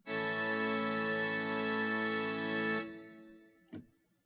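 Sampled 1898 Hope-Jones pipe organ, played through a virtual pipe organ, holds a chord on the swell's viole d'orchestre string with its celeste rank and its sub-octave and super-octave couplers. The chord is steady for nearly three seconds, then released, dying away in reverberation. A faint click comes near the end.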